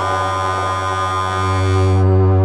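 ElectroComp EML 101 analog synthesizer sounding one held low note with many bright overtones, its tone changing as panel knobs are turned. It swells louder toward the end.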